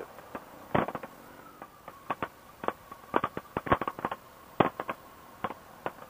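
Irregular sharp pops and clicks, about a dozen, coming through a Sena motorcycle helmet intercom's narrow-band audio, over a faint steady tone.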